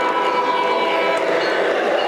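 O gauge model Amtrak Acela passing close by, its sound system's horn giving one chord-like blast that stops about a second in, over the running noise of the train on the track.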